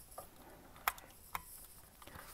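A few faint, sharp clicks of a small screwdriver working a tiny screw in the plastic chassis of a 1:18 diecast model car.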